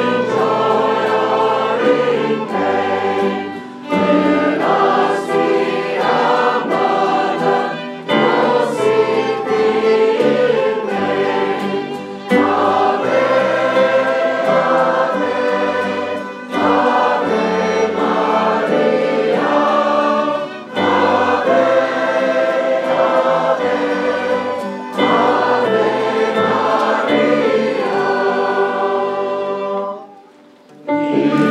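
Mixed choir singing a hymn with a small ensemble of electric keyboard, tuba and violins, in phrases of about four seconds with short breaths between. The music stops right at the end.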